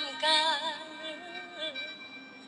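Woman singing a slow melody into a stage microphone, holding notes with small pitch slides; the phrase fades toward the end.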